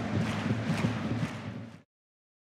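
Football stadium crowd noise that fades and then cuts off abruptly just before the end.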